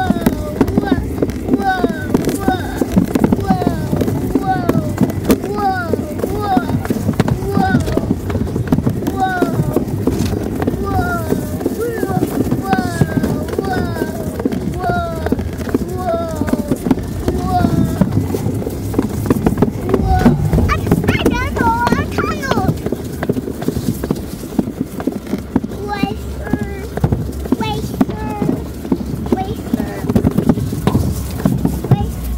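Alpine slide sled running fast down its track with a continuous clattering rumble. Over it a toddler makes short repeated cries, about one a second through the first half, and a few rising squeals later on.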